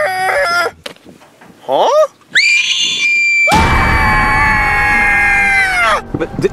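A comic 'shark scream': a short rising squeal, then a high held cry that breaks into a loud, harsh scream lasting about two seconds before cutting off.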